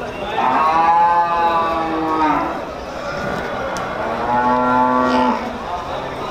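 Murrah buffalo calling twice: two long, steady, low moos of about two seconds each, the second a little lower in pitch.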